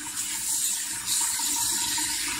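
Kitchen tap running steadily, its stream splashing over a lettuce leaf being rubbed clean under it and falling into a mesh-lined bowl below.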